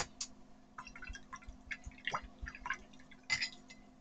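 Paintbrush being rinsed in a glass jar of water: faint, scattered small clinks against the glass with little splashes and drips.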